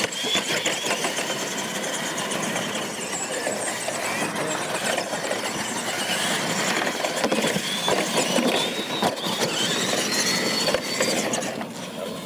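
Radio-controlled monster trucks racing on a dirt track: their electric motors and gears whine, rising and falling in pitch with the throttle, over a constant rush of tyres on dirt with occasional knocks as they hit the ramps. The noise starts suddenly at the launch.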